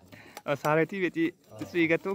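Voices talking, with light clinking and scraping of machete blades shaving wooden poles.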